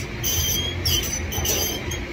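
Cable machine's steel cable and pulleys squeaking in short, high-pitched bursts, several a second, as the handle is pulled through a one-arm cable exercise, over a steady low hum.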